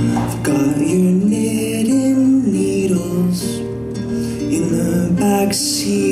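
Live acoustic folk music: fingerstyle acoustic guitar with cello, and a male voice singing a slow melody.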